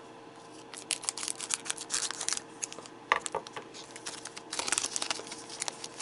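Foil trading-card booster pack being crinkled and torn open by hand, in two spells of sharp crackling: one about a second in and another near the end.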